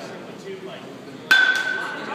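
A baseball bat striking a pitched ball, a single sharp hit about a second and a half in, followed by a ringing tone that fades over about half a second.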